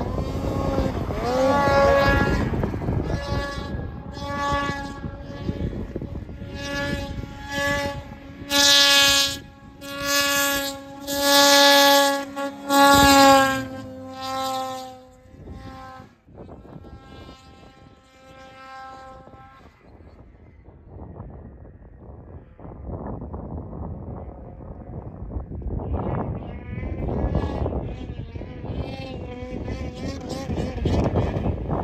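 Snowmobile engines revving hard at a high, steady pitch as sleds plough through deep powder, with several loud surges about a third of the way through. In the second half the engine sound is fainter and rougher, building again near the end.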